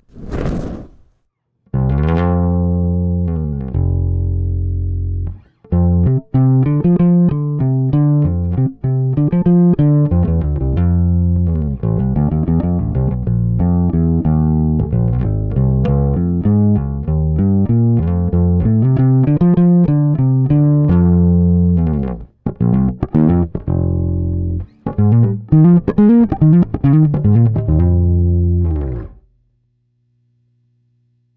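Electric bass guitar played through a Crazy Tube Circuits Locomotive, a 12AY7 tube overdrive pedal, on the first and smoothest of three settings: a melodic bass line of held notes and quicker runs with a warm, lightly driven tone. It breaks off briefly twice and stops about a second before the end.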